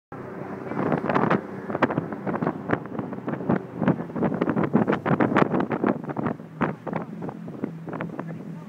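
Jetboat moving at speed: heavy, irregular wind buffeting on the microphone over the steady low hum of the boat's engine.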